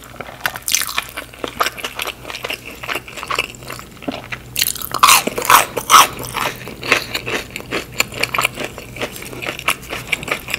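Close-miked biting and chewing of a ketchup-dipped fried onion ring: crisp crunching bites and wet chewing, the loudest crunches about five to six seconds in.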